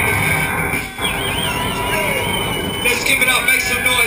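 Live hip-hop DJ set playing loud over a small club's PA, mixed with crowd chatter. About a second in, a high wavering electronic tone comes in, runs for around two seconds and then stops.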